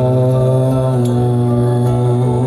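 Live worship song: a man singing a long held note with the band, over a steady low bass.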